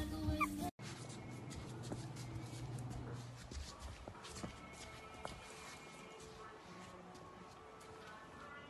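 Music with singing that cuts off abruptly just under a second in. Then a small fluffy white dog makes faint sounds over a steady hiss, with scattered light clicks and knocks.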